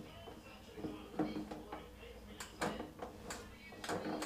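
Faint clicks and knocks of an electric shower's plastic control dial being turned, with no water running: the shower is not coming on.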